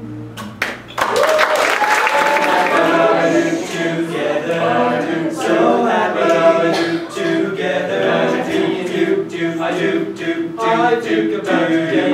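A group of teenage boys singing together a cappella, with no instruments, starting about a second in after a brief lull.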